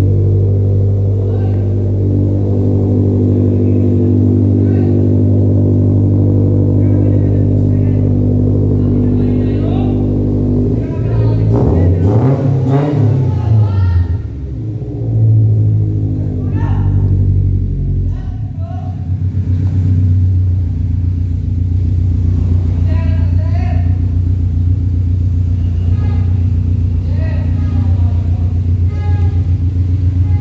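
Toyota 86's flat-four engine idling steadily, revved up once and back down about halfway through, then idling again.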